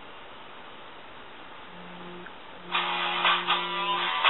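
Cell phone ringing: a brief low buzz about two seconds in, then a guitar-like musical ringtone starts loudly near three seconds in over a steady low buzz.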